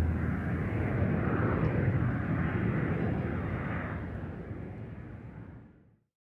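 Steady in-flight airliner cabin noise, an even low rumble and hiss. It fades out over the last two seconds to silence.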